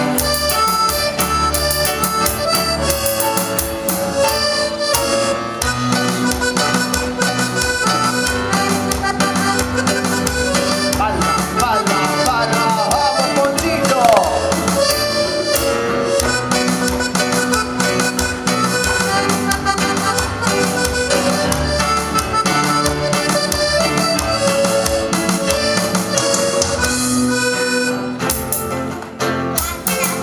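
Small piano accordion playing a lively tune: a sustained reedy melody over a regular bass-and-chord pulse. A short break comes near the end.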